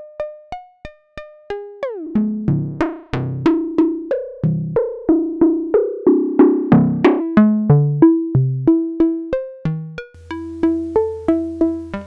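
Software modular synth patch (Reaktor Blocks West Coast DWG oscillator through low-pass gates) playing a sequenced melody of short plucked notes, about three a second. The oscillator's carrier and modulating oscillator frequency-modulate each other, giving a richer, growlier tone in the middle that thins out again near the end.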